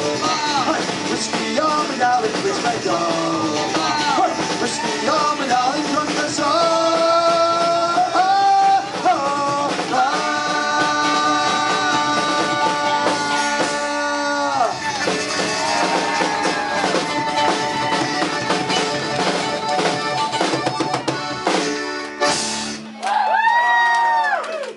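Live Celtic punk band playing full out, with electric guitars, accordion and singing, including long held notes in the middle. The music breaks off near the end as the song finishes.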